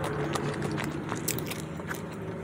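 Close-miked chewing of fried food, with many short, crisp crackling clicks from the crunching.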